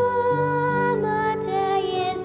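A young girl singing a slow Manx folk song in long held notes, over piano accompaniment.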